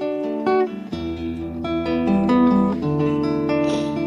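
Acoustic guitar music with picked notes and chords, under a pause in the talk.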